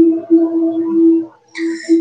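A steady, single-pitched droning tone held for about a second, breaking off and starting again, followed by a short hiss near the end.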